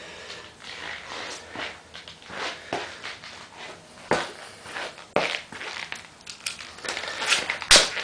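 Scattered clicks and knocks of objects being handled, with sharper knocks about four and five seconds in and the loudest just before the end; the vacuum motor is not running.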